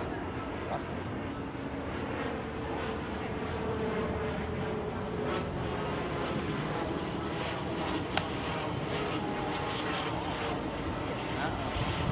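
Steady rumble of a distant aircraft engine passing over, with faint voices and one sharp knock about two thirds of the way in.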